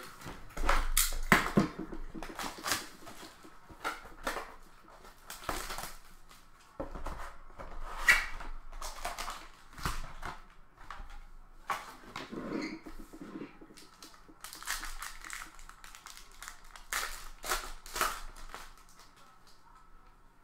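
A cardboard trading-card hobby box being opened and its foil card packs handled and torn open. There is irregular crinkling, rustling and tearing, with some sharp crackles.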